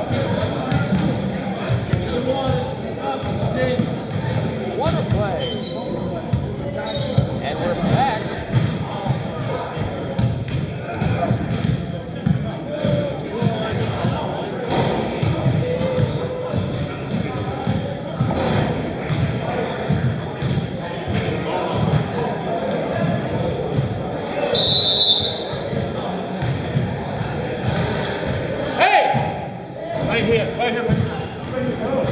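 Basketballs bouncing on a hardwood gym floor, with indistinct voices chattering and echoing around a large gym hall. A short high-pitched tone sounds about 25 seconds in.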